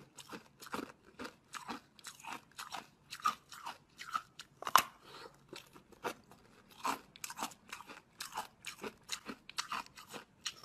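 Frozen ice being bitten and chewed: an irregular run of sharp crunches, two or three a second, with one louder crack just under five seconds in.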